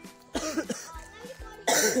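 A song with a steady beat plays throughout. A person's voice is heard briefly about half a second in, and near the end comes a short, loud, harsh burst of breath from a person.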